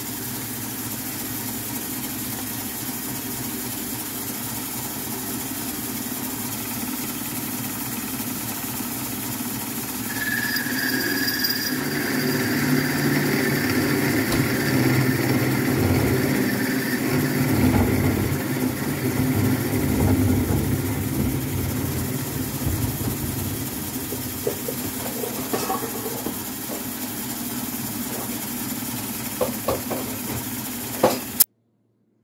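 Metal lathe running steadily with a constant hum. From about ten seconds in, the cutting tool bites into the turning workpiece and the sound grows louder and rougher for about twelve seconds, with a brief higher ring at the start, then settles back to the steady run. A few light clicks near the end.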